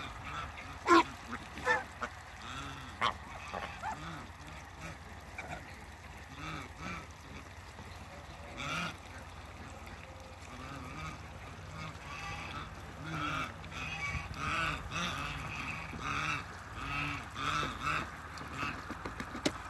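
Domestic geese honking: a few loud honks in the first three seconds, then softer, quicker calls repeating through the second half.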